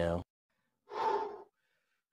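A man gasping once, a short breathy exhale about a second in. He sounds out of breath and worn out.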